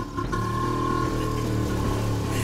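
Cartoon sound effect of a bemo (small three-wheeled minicab) engine running steadily as the vehicle drives off.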